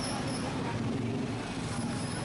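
Steady traffic noise of a busy city street, with vehicle engines running.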